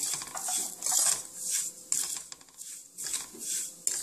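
Metal spoon scraping and stirring dry roasting semolina with coconut and nuts around a nonstick frying pan, in quick repeated strokes about two a second.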